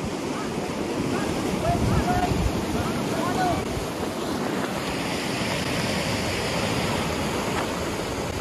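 Whitewater rapids of an artificial slalom course rushing steadily.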